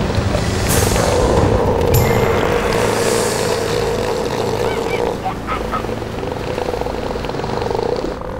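Bull southern elephant seals bellowing at each other in a territorial threat display: long, throaty calls lasting several seconds, breaking off briefly about five seconds in and then resuming with a pulsing rattle.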